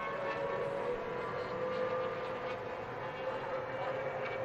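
IndyCar race cars' twin-turbo V6 engines running on the oval, a steady high whine over the hiss of track noise.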